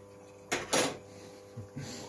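A person sniffing sharply twice about half a second in, then a softer breath near the end, smelling the freshly distilled spirit, over a steady faint hum.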